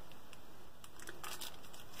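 Faint crinkling of a plastic candy-bar wrapper being handled, with a few short crackles, most of them about a second in.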